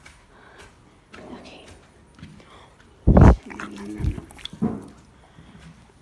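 A horse snorts once, loudly, about three seconds in, followed by a short low pitched vocal sound from the animal.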